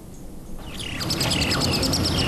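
Small birds chirping in quick, repeated downward-sliding notes over low outdoor background noise, fading in about half a second in.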